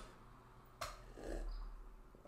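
A faint click, then a soft gulp lasting about half a second as a man drinks thick blended smoothie straight from a blender cup.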